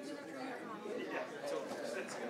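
Indistinct chatter of many people talking at once, with no single voice standing out.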